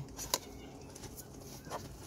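Two light clicks in the first half-second from gloved hands handling parts at the air intake, then faint handling noise over a steady low hum.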